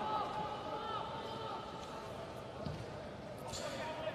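Faint ambience of a near-empty football stadium under a TV broadcast: a low, even haze of ground noise with a faint steady hum, and a couple of soft knocks in the second half.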